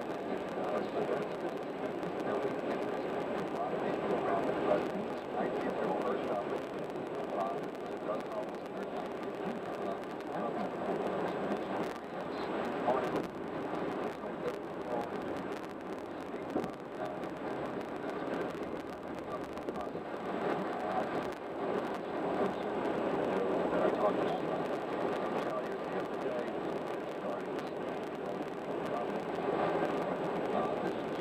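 Indistinct, muffled speech running on over steady road noise from a car driving on a highway.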